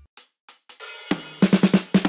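Drum-kit intro to a children's song: a few sparse hits, then about a second in a quick fill of drum strokes with cymbals.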